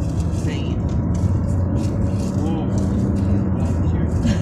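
Steady low road and engine rumble inside a moving car's cabin, with faint bits of talk from the passengers.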